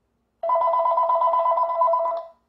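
Telephone ringing: a single electronic two-tone trill, rapidly warbling, that starts about half a second in and lasts about two seconds.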